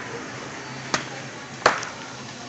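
Two sharp knocks, about a second in and again near the end, the second louder: the glass door of a supermarket refrigerated cooler swinging shut. A steady low hum runs underneath.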